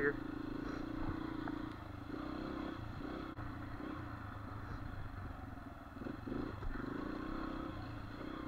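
Dirt bike engine running at low, steady throttle, its pitch wavering slightly as the rider eases along.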